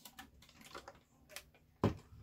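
A few light clicks and taps of items being handled and set down, with one louder knock near the end.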